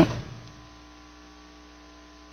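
A pause in the talk: a word fades out at the start, then only a faint, steady electrical hum.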